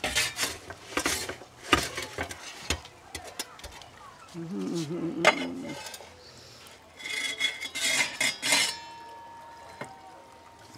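Metal pizza peel scraping and clinking on the oven floor and against a ceramic plate as a pizza is drawn out and slid onto the plate: a run of sharp clinks and scrapes at the start, then another cluster a little before the end.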